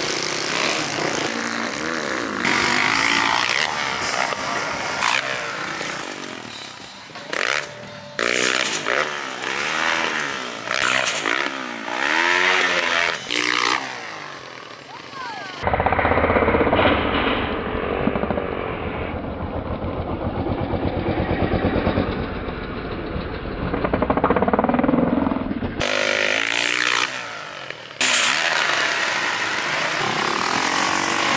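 Dirt bike engines revving up and down in a string of short clips, the pitch rising and falling with each twist of the throttle. About halfway through, a closer, duller engine note with a rapid, even firing beat takes over for about ten seconds, then the brighter revving returns.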